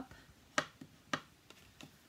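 Crisp clicks and ticks of stiff scored cardstock being folded and creased with a bone folder against a wooden tabletop: two sharp clicks about half a second apart, with a few fainter ticks between and after.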